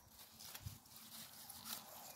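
Faint rustling of cut broad bean stems and leaves being handled, with a few soft clicks.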